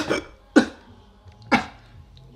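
A man coughing hard, a series of sharp single coughs about a second apart.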